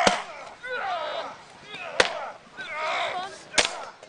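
Weapons striking round shields in staged hand-to-hand combat: three sharp cracks, one at the start, one about two seconds in and one near the end, with voices calling out between the blows.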